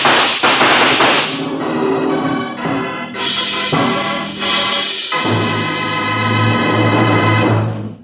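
Gunfire sound effects in the first second or so, then a dramatic organ music bridge. The organ plays a few stepped chords and ends on a long held chord with a deep bass note, the act-ending sting of a radio drama.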